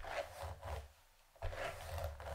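Wooden paddle brush drawn down through long straight hair: two swishing strokes, the second starting near the end.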